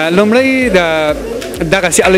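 A man's voice speaking, with one drawn-out vowel that rises and falls in pitch in the first second.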